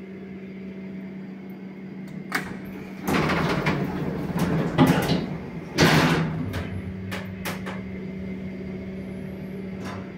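2000 OTIS lift's car doors sliding shut, a long loud rattling run followed by a second burst as they close, then a few sharp clicks, all over the car's steady electrical hum.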